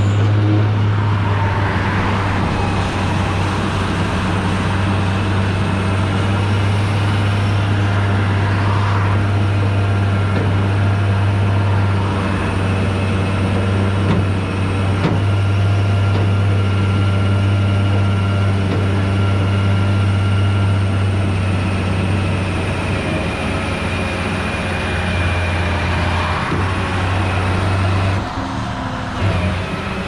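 Tow truck engine running with a low, steady drone at raised idle while the winch pulls a stuck pickup in on its cable; the drone drops off about two seconds before the end.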